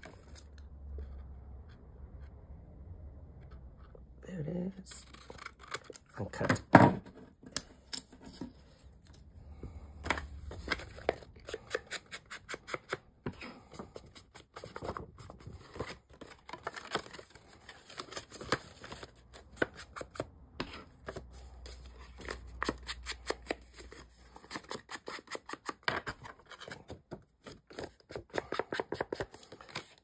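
Card paper being handled and folded, then an ink blending tool rubbing and dabbing along the paper's edges in quick scratchy strokes. There is one loud knock about seven seconds in.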